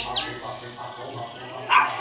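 A dog barks once, sharply, near the end, over a quieter background in which small birds chirp briefly at the start.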